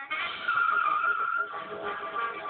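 Car tyres squealing in a skid, a high screech starting about half a second in and lasting about a second, over background music.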